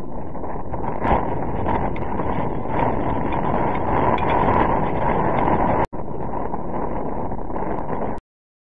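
Wind buffeting an outdoor camera microphone, a steady rumbling hiss, with one sharp knock about a second in and a brief break in the sound just before six seconds.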